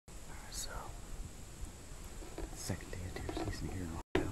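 A man whispering, too faint for the words to be made out.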